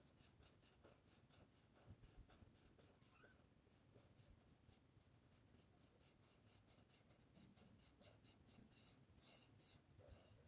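Very faint scratching of a felt-tip marker colouring on paper, quick back-and-forth strokes repeating several times a second.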